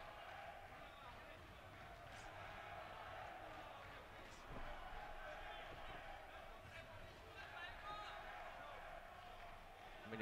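Quiet boxing-arena ambience: a steady hall hum with faint, distant voices and a few soft thuds from the ring.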